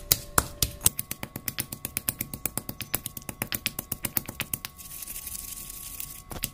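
Stone pestle pounding a wet green chilli masala in a black stone mortar: rapid, even knocks of stone on stone, about six a second, growing softer near the end.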